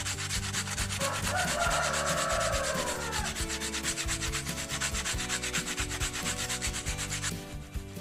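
Sandpaper (120 grit) rubbed by hand over a foam fishing-float body on a fibre rod: rapid, even rubbing strokes that stop shortly before the end.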